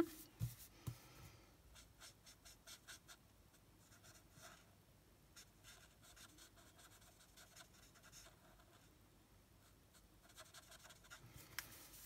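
Faint scratching of a Stampin' Blends alcohol marker tip on cardstock: short repeated colouring strokes, thickest in the first few seconds, sparser in the middle, and picking up again near the end.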